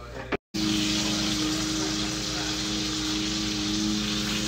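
Steady hum of a kitchen range hood exhaust fan, two low droning tones over an even hiss, starting abruptly after a short dropout about half a second in.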